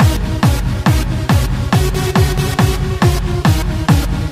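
Electronic dance music with a heavy, steady kick drum, a little over two beats a second, which comes in at the start.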